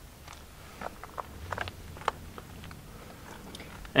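Faint, scattered small clicks and light knocks of handling, about a dozen spread irregularly, over a faint low hum.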